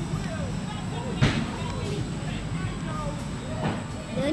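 Steady low hum of a running electric fan under faint background voices, with a sharp tap about a second in and a softer one near the end.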